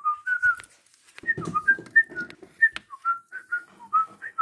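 A quick run of short, clear whistled notes stepping up and down like a little tune, with a few soft clicks and handling rustle among them.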